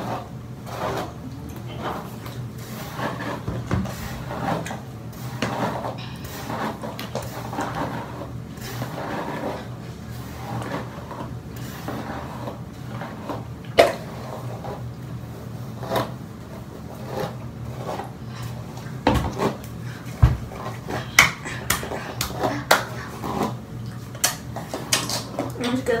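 Quiet, indistinct talk with scattered clicks and knocks of small objects being handled, over a steady low hum.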